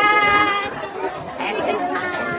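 A woman's voice close by, talking and laughing, over the chatter of many people.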